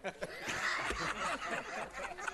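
A group of people laughing and chattering over one another, the laughter swelling briefly near the middle.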